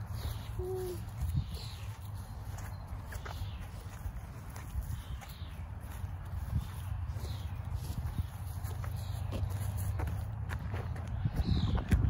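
Wind buffeting the microphone in a steady low rumble, with footsteps on grass and birds giving short, falling chirps every second or two in the background.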